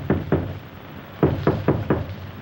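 Rapping on a door: a couple of knocks, then after a pause of about a second a run of four quick knocks near the end.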